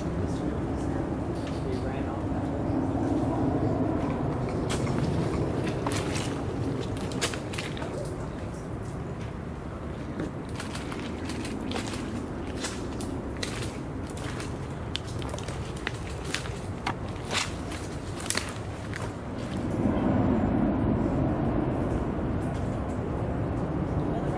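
Footsteps through dry leaf litter and twigs, with frequent sharp snaps and crackles through the middle of the stretch over a low steady rumble.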